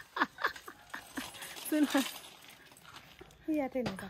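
Speech: a few short spoken phrases or vocal sounds, with quieter gaps between them.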